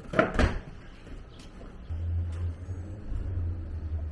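A battery lead being plugged into a small electric outboard motor's wiring, heard as a sharp snap or knock just after the start, followed from about halfway by a low, steady hum.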